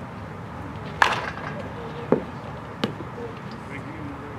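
A baseball bat striking a pitched ball: one sharp crack about a second in, followed by two softer knocks, over background chatter.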